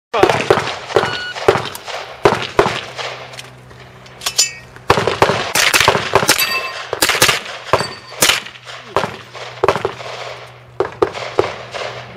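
A rapid string of gunshots, about two dozen, fired in quick bursts with a brief pause about three seconds in. A few of the hits are followed by the short ring of steel plate targets.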